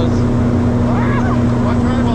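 Steady drone of the Cessna Conquest I's twin Pratt & Whitney PT6A turboprop engines and propellers, heard inside the cabin in flight, the engines humming along evenly at a cruise-climb setting. A faint voice comes through about a second in.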